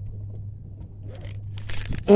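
Rustling and scraping of the camera being handled against clothing, with a brief louder rustle near the end, over a steady low hum.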